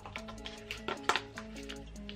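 Soft background music with held notes, over a few light clicks from cardboard and paper packaging being handled as a watch box is opened.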